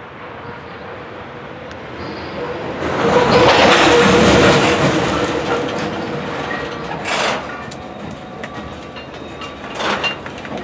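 Loaded rock-train hopper cars rolling slowly past, their steel wheels clattering over the rail joints. The sound swells for a couple of seconds about three seconds in, with a faint steady whine under it, and there are sharp knocks about seven and ten seconds in.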